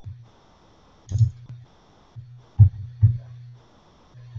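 Computer mouse clicking: three sharp clicks, one about a second in and two close together near the end, over a low hum.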